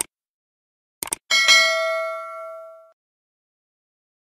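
Subscribe-button animation sound effect: a click, then a quick double click about a second in, followed by a bright bell ding with several ringing tones that fades out over about a second and a half.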